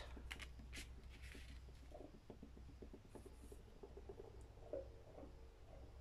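Near silence with faint handling sounds: a few light clicks early on, soft rustling of paper and a small knock near the end as a plastic bottle of wood glue is picked up and worked over paper.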